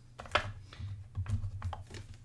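A few light, irregular clicks and taps of tarot cards being handled and set down on a tabletop.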